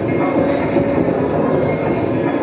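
Live electronic ambient improvisation: a dense, steady drone of many held tones over a grainy, noisy rumble, played on electronic instruments.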